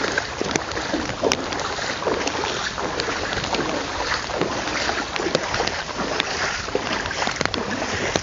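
Floodwater splashing and sloshing, many small irregular splashes over a steady rush of noise, with wind buffeting the microphone.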